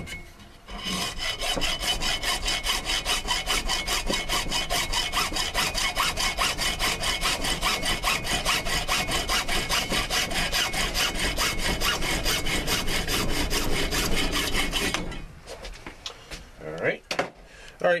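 Hacksaw cutting through PVC pipe with quick, even back-and-forth strokes, sawing the pipe off above a glued fitting. The sawing stops about three seconds before the end, and a few lighter handling knocks follow.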